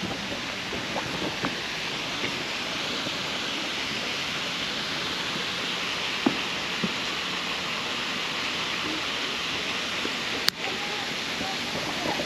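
Steady outdoor background noise, an even hiss, with a few faint ticks and one sharp click about ten and a half seconds in.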